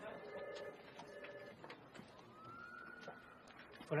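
Quiet office background: two short buzzing electronic tones in the first second and a half, then a faint tone that rises and falls, over low murmur.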